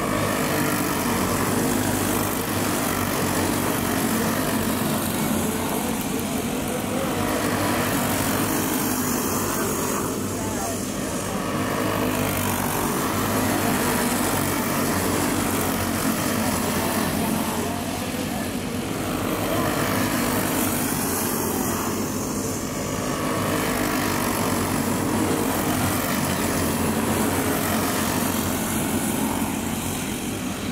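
A pack of dirt-track racing karts running flat out, their small engines making a steady, loud drone that swells and eases every several seconds as the karts come around the track.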